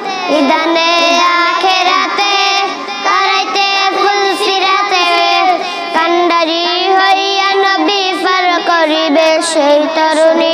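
Young boys singing a Bengali naat, a devotional song in praise of the Prophet, together and unaccompanied, with long held notes that bend in pitch.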